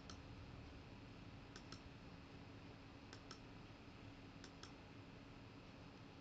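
Faint pairs of short clicks, four times about a second and a half apart, from computer controls advancing a slide show, over a near-silent room with a faint steady hum.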